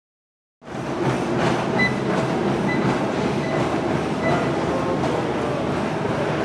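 Steady, dense gym room noise with faint, indistinct clatter, cutting in abruptly about half a second in.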